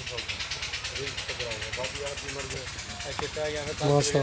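Quieter background voices of people talking, over a steady noise bed, in a lull between the nearby speaker's words; the close voice comes back at the very end.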